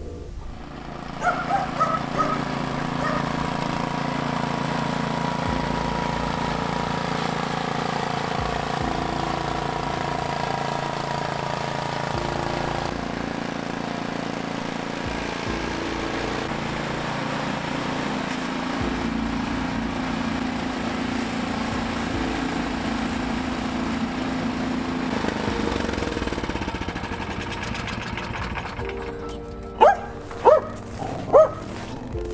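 Snowblower's small petrol engine running steadily while it throws snow, its note shifting a few times.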